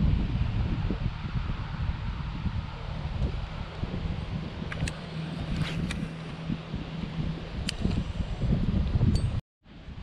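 Wind rumbling and buffeting on the microphone, with a few light clicks in the second half. The sound cuts off abruptly just before the end.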